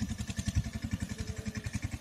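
A small engine idling nearby: a steady low throb of about a dozen even beats a second.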